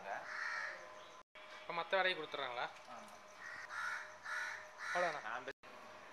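Crows cawing several times in short calls, with a person's voice heard among them; the sound cuts out briefly twice.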